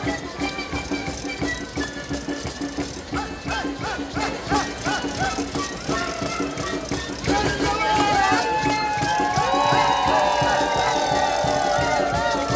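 Live street-parade band music: drums with wind instruments playing an Andean dance, with voices over it. The music grows fuller and louder about two-thirds of the way through.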